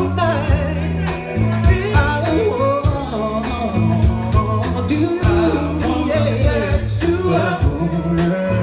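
Live band performing: a male singer singing into a microphone over electric bass, electric guitar and a drum kit keeping a steady beat.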